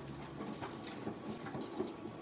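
Faint, irregular light taps and clicks of fingers drumming impatiently on a photocopier's plastic casing.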